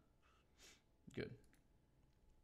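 Near silence in a small room, with a few faint computer mouse clicks about three-quarters of the way through as the page is clicked on to the next lesson.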